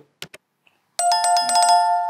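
Two quick mouse-click sound effects, then about a second in a bell chime that starts suddenly and rings on with several steady pitches. This is the notification-bell sound effect of an animated subscribe button.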